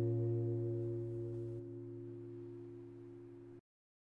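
An acoustic guitar's final chord ringing out and slowly fading away. It cuts off suddenly near the end.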